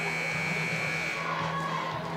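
Gymnasium scoreboard buzzer sounding one steady, high-pitched blast that cuts off a little over a second in, marking the end of a timeout.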